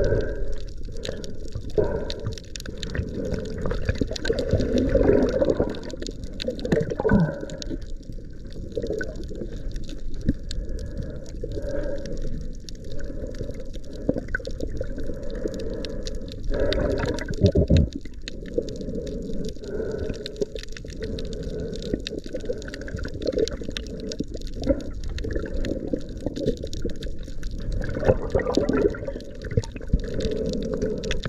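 Water sloshing and gurgling around an underwater camera riding just below the surface. It comes in irregular low surges with scattered small clicks and splashes.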